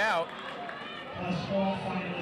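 Speech: a commentator's word at the start, then quieter voices of people in the gym over a low steady hum.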